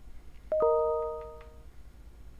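A computer's email notification chime: a short two-note descending ding that rings out and fades over about a second.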